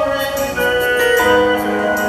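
Live gospel song: a solo singer's held note through the PA over keyboard accompaniment, the chords shifting a little over a second in.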